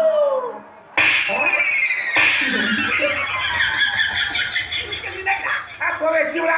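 A sudden loud burst about a second in: a high whistle-like tone slides downward over about two seconds, over audience laughter and shouting.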